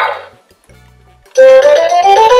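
Electronic sounds from a VTech Lustige Fahrschule toy steering wheel: a noisy sound effect fades out in the first half second, and after a short pause a loud, bright electronic tune of notes stepping upward in pitch starts about halfway through.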